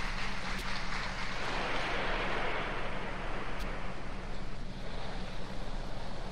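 Theatre audience applauding on a 1970s live stage recording, swelling to its peak about two seconds in and thinning out toward the end, over a steady low hum from the old recording.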